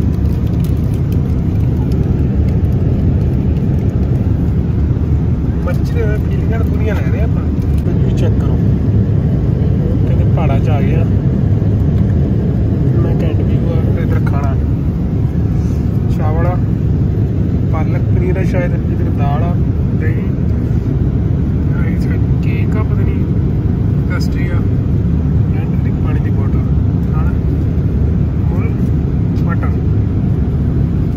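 Steady low rumble of an airliner cabin in flight, with faint voices talking now and then in the middle stretch.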